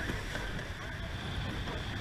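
Rushing whitewater around a rowed surfboat's hull, mixed with wind buffeting the boat-mounted microphone, as a steady low rumbling noise.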